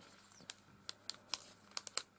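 Thin clear plastic bag crinkling as fingers handle and turn it, with a handful of separate sharp crackles.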